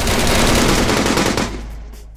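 A loud crackling burst of static-like noise from a logo-reveal sound effect over a low bass note, breaking off about a second and a half in and then fading away.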